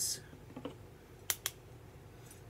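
Two quick sharp clicks about a fifth of a second apart, from small hard makeup items being handled at the dressing table.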